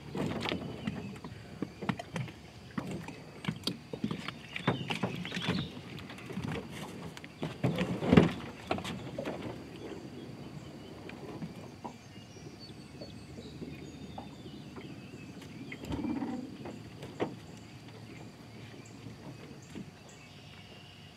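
Hollow knocks and thumps on an old aluminum boat's hull as a man steps into it from the dock and moves about inside. The knocks come thick in the first half, the loudest about eight seconds in, and thin out to a few thumps later.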